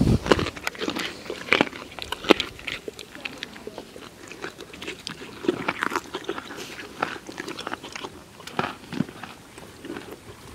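Miniature horse biting and chewing carrot pieces close up: crisp, irregular crunches, loudest in the first few seconds.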